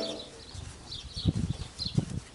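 Small birds chirping in short repeated calls, with a few dull low knocks about a second in and again near the end.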